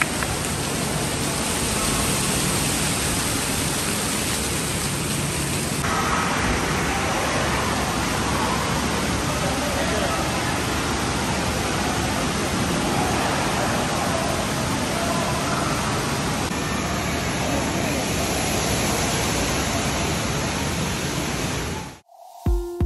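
Steady wash of rushing, splashing water from an indoor waterpark's fountains and sprays, with a background babble of many voices.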